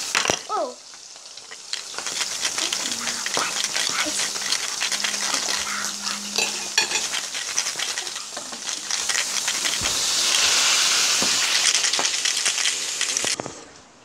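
Metal bolts and nuts rattling inside a small bottle as it is shaken, a dense run of clicks and clatter. It is most intense over the last few seconds and stops abruptly just before the end.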